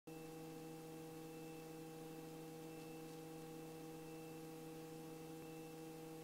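Faint steady hum of several held tones on the intercom audio of a Robinson R44 helicopter in flight, with no change throughout.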